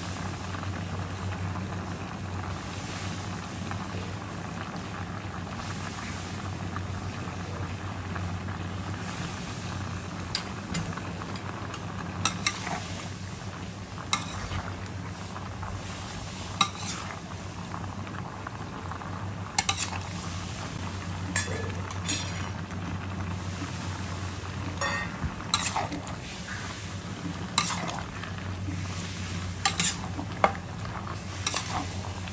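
Metal spatula stirring and turning vegetables and meat in a stainless steel wok over high heat, with the food sizzling steadily. Sharp clinks of the spatula striking the pan come now and then from about a third of the way in, more often in the second half, over a steady low hum.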